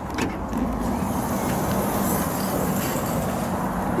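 Steady motor-vehicle rumble with a low, even hum.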